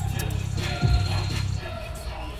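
Background music with a deep bass; a low bass note falls in pitch about a second in.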